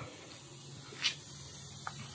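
Faint steady background hiss in a pause between spoken phrases, with one brief, louder hiss about halfway through and a tiny click near the end.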